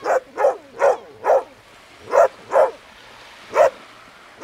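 A dog barking seven times: four quick barks, then a pair, then a single bark near the end.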